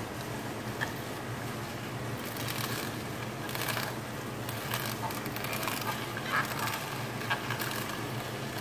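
Tribest slow masticating juicer running with a steady low motor hum while its auger crushes celery stalks, with irregular crackles and squeaks as the stalks are pushed down the feed chute.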